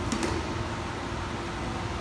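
Steady background hum of room noise, with a short knock or two just after the start from a handheld microphone being handled as it is passed between people.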